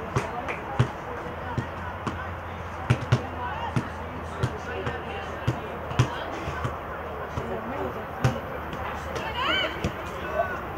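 Football being kicked and bouncing on artificial turf: a dozen or so short sharp thuds at irregular intervals, two close together about three seconds in. A high voice calls out near the end.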